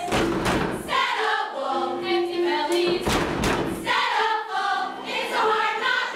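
A chorus of women singing a show tune on stage, broken by loud thumps on the stage floor: a pair at the start and another pair about three seconds in.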